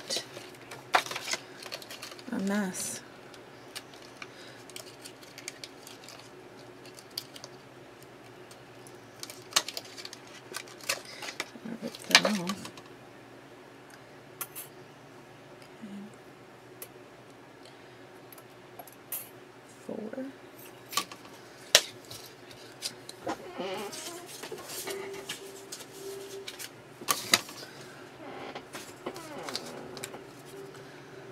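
Thin metal cutting dies clicking and clinking as they are handled and laid on a cutting plate, with cardstock shuffling and scattered taps. Near the end a short steady motor hum as the electric Sizzix Vagabond die-cutting machine starts drawing the plate sandwich through its rollers.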